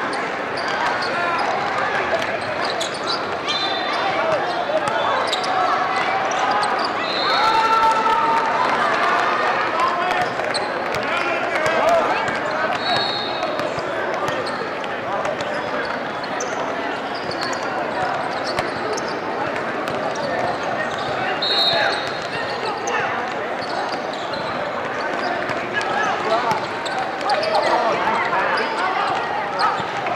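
Youth basketball game on an indoor court: a basketball bouncing on the floor and short high squeaks, over a steady chatter of many voices in a large hall.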